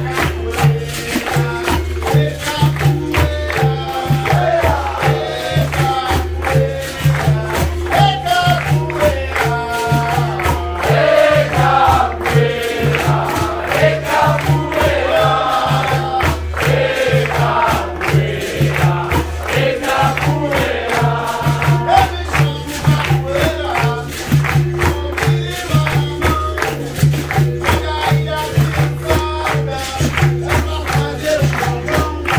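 Capoeira roda music: berimbaus, an atabaque drum and pandeiros keep a steady rhythm while the circle sings together and claps along.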